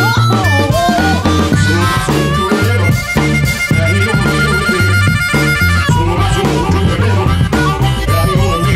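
Blues harmonica (blues harp) playing a lick over a bass line, with bent notes in the first second or so, then a long held note from about two and a half to six seconds in.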